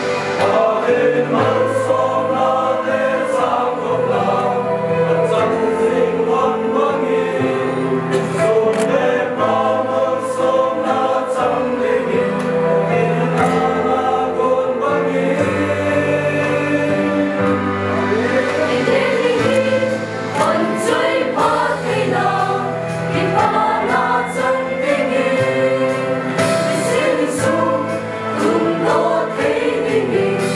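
Mixed choir of young men and women singing a hymn in harmony.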